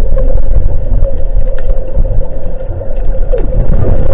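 Underwater noise picked up by a GoPro in its waterproof housing: a loud, steady low rumble with a constant mid-pitched hum running through it.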